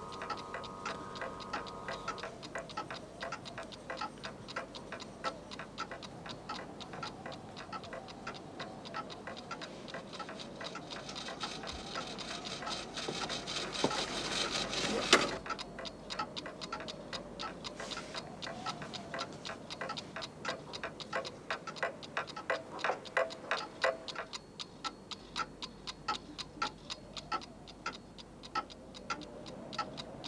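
Several mechanical clocks ticking together in overlapping rhythms. A swell of sound builds and cuts off suddenly about fifteen seconds in, and near the end the ticking thins to a sparser beat.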